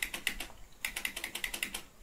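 Computer keyboard typing: a quick run of repeated key presses, a short pause about half a second in, then another quick run, as digits and many spaces are keyed in.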